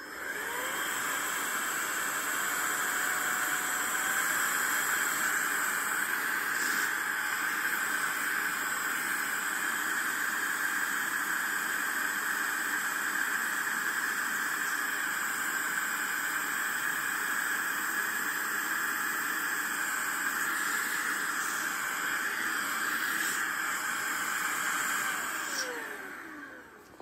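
Roedix R7 cordless air duster's electric fan motor running steadily as it blows air through its inflation tip into a valve: a steady rush of air with a thin motor whine. It spins up just after the start and winds down just before the end. The tip is not fully seated in the stiff valve.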